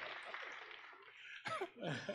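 Quiet congregation murmur in a large hall during a pause in the talk, then a man's short chuckle into the microphone near the end.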